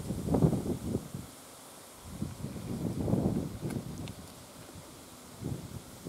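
Wind buffeting the microphone in irregular gusts, about three rumbling surges with quieter lulls between.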